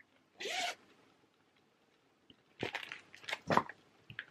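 A short breathy sound about half a second in, then a brief run of rustling and crinkling from hand-knitting and yarn being handled, as a project is set down and the next one picked up.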